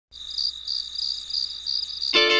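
Crickets chirping: a steady high trill with brighter chirps pulsing over it about three times a second.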